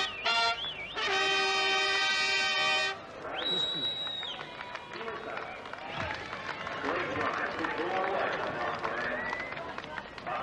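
Herald trumpets play a fanfare that ends on a long held chord about three seconds in. A short high steady tone follows, and then a crowd of voices chattering and calling.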